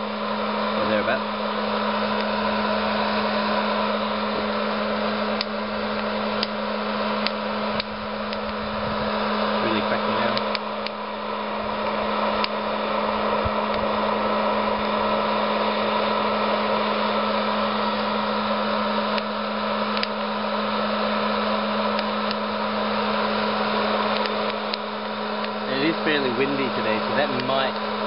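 Hot-air popcorn popper's fan and heater blowing steadily with a low hum, while coffee beans roasting in it give scattered sharp cracks: first crack of the roast in progress.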